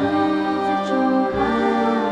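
Slow choral-orchestral music: sustained chords, with the bass note changing about a second and a third in.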